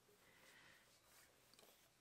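Near silence: room tone, with a few faint ticks about one and a half seconds in.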